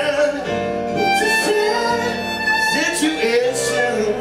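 Violin playing a slow melody of held notes, with slides between some of them, over grand piano accompaniment.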